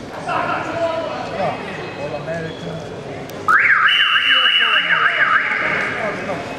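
An electronic alarm starts suddenly about three and a half seconds in and is loud: a warbling tone sweeping up and down about three times a second over a steady high tone, then settling to a steady high sound.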